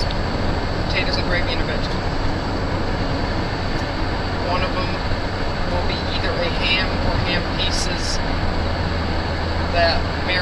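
Steady road noise of a car travelling at speed, heard from inside the car: an even rush of tyres and wind over a constant low engine drone.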